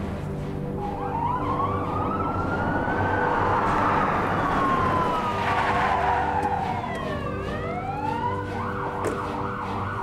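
Police car siren wailing in long, slow rising and falling sweeps, switching to quicker short yelps near the end, with background music underneath.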